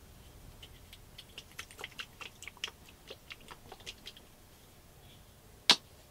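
Plastic acrylic paint squeeze bottles clicking and knocking against each other as they are handled and picked from a rack: a run of small light clicks, about three or four a second, then one sharp, louder click near the end.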